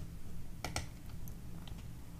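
Two quiet computer mouse clicks close together about two-thirds of a second in, followed by a few fainter ticks, over a low steady room hum.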